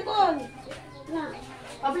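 People and children talking, with one voice sliding down in pitch at the start, then scattered chatter.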